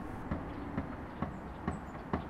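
Light knocks about every half second, the sounds of a person moving and climbing up inside a metal dumpster.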